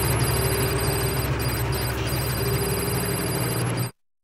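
Electronic sci-fi drone: a steady, hissy hum with faint high tones that come and go. It cuts off suddenly just before the end.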